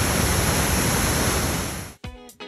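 A steady, even rushing noise that cuts off suddenly at the end.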